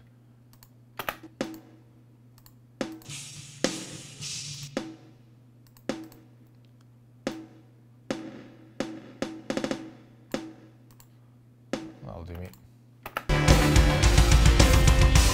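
Sampled snare drum track playing back on its own from a DAW: scattered single snare hits, some trailed by a reverb tail, with a quick roll of hits about nine seconds in, over a faint steady low hum. Shortly before the end the full band mix cuts in loudly.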